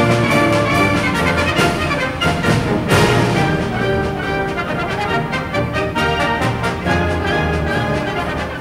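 Brass-led orchestral music, with trumpets and trombones playing sustained chords and a strong new entry about three seconds in.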